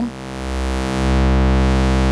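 A held low synthesizer tone passing through the Doepfer A-106-6 XP filter in three-pole all-pass mode, sounding as a phase shift. The filter frequency is turned down, so a notch sweeps slowly through the low harmonics. The tone swells in level over the first second and then holds steady.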